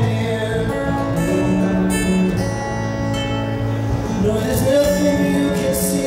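Steel-string acoustic guitar played solo in a slow folk ballad, chords ringing on with the bass note changing about once a second, in the instrumental gap between sung lines.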